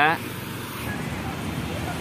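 Steady noise of a Tata Ace mini truck driving through city traffic, heard from inside its cab: an even hum of engine and road noise with no distinct events.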